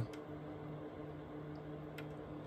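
Goldshell HS3-SE ASIC miner's cooling fans running: a steady hum with a few low steady tones.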